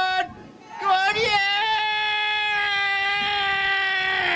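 A man's celebratory shout cheering a try: a short yell cut off just after the start, then after a brief pause one long, loud, held cry of about three and a half seconds at a steady pitch.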